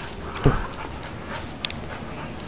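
A dog moving about close by on a tile floor: a thump about half a second in and a few light clicks.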